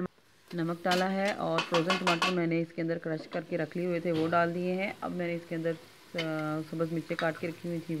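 Masala frying in ghee in a pressure-cooker pot, sizzling as a steel ladle stirs it, with a woman's voice talking over it.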